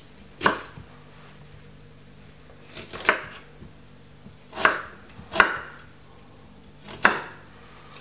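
Chef's knife cutting a piece of ginger on a wooden chopping board: five sharp knife strikes on the board, irregularly spaced.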